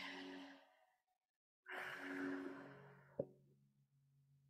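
A woman's faint sigh, a breathy exhale lasting just over a second, about halfway in, followed by a single soft click.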